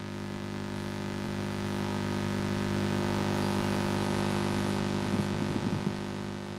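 A steady electronic drone of many held tones under a hiss, swelling in loudness to the middle and easing off, with a brief crackle about five seconds in.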